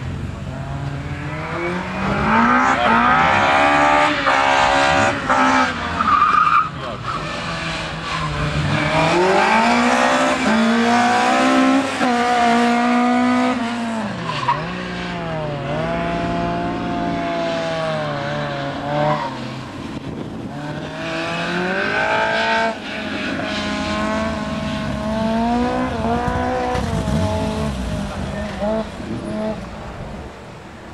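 Opel Corsa's C20XE 2.0-litre 16-valve four-cylinder engine at full throttle in a sprint run: revs climb and fall several times, with sharp drops as it shifts gears and lifts for corners.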